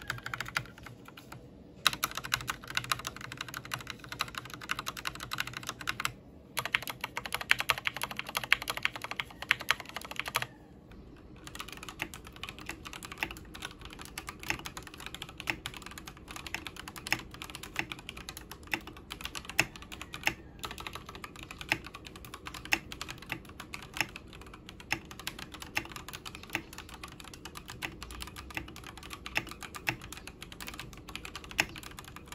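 Akko 3108 full-size mechanical keyboard with Gateron Pink linear switches: for the first ten seconds or so the larger stabilized keys at the edges of the board are pressed over and over in quick, loud runs of clacks with two short breaks. After a brief pause it settles into steady, slightly quieter typing.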